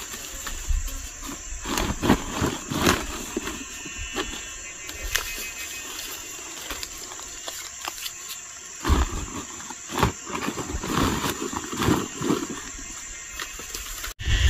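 Freshly cut bamboo shoots being handled and bundled: irregular knocks and rustles of stalks against each other and crackling of dry leaves underfoot, the loudest clatters about nine and ten seconds in. Insects drone steadily in the background.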